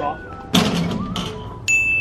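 A bright ding sound effect starts near the end and rings on steadily, over background music. About half a second in there is a short, loud, rushing burst.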